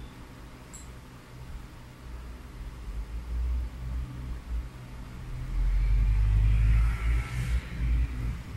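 A deep, low rumble that swells from about two seconds in and is loudest around six to seven seconds, like a heavy vehicle passing.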